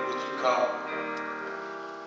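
Church keyboard holding sustained chords, with a brief voice sounding over it about half a second in.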